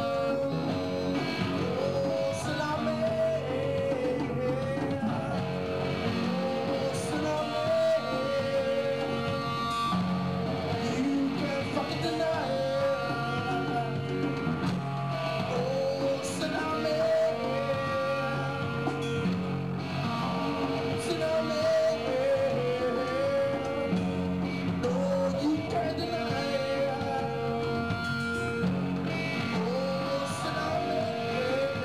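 Live band music: a harmonica played into a cupped handheld microphone wails in repeated bending phrases over electric guitar and drums.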